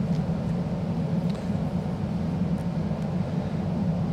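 Steady low room hum, with a faint rustle of a paper book page being turned.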